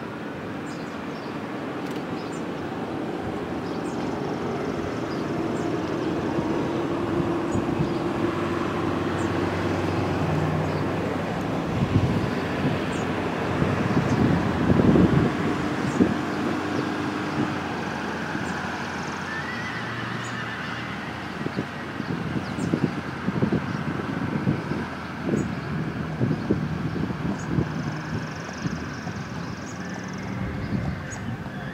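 Horses working on sand arena footing: hoof sounds over steady outdoor background noise, with a cluster of louder knocks in the middle and irregular knocks near the end.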